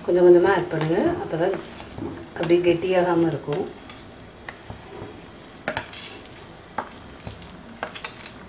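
Metal spoon clinking against a plate and an iron kadai as semolina is tipped and stirred into boiling water, with a few sharp clicks in the second half.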